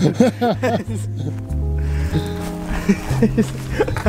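Background music with a low bass line holding notes that change every second or so, with a man's laughter over it near the start and again near the end.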